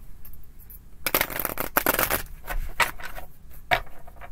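A tarot deck being shuffled by hand: a run of rustling card noise, densest from about a second in to just past two seconds, then a couple of single rustles near the end.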